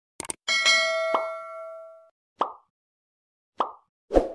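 Sound effects for a subscribe-button animation: a quick double mouse click, then a bright bell ding that rings out for about a second and a half. Two short pops follow, about a second apart.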